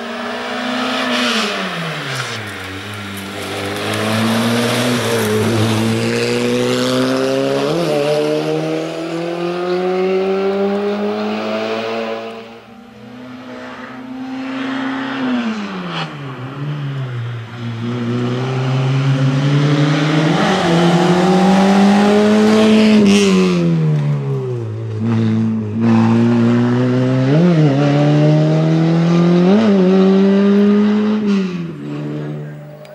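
A racing Peugeot hatchback's engine revs hard and drops back again and again as the car brakes and accelerates through tight cone chicanes. There are short, sharp blips of the throttle between the runs of acceleration.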